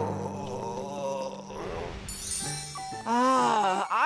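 A cartoon character's drawn-out, wavering groan over soft background music, with a brief hiss about two seconds in and more wordless vocal sounds near the end.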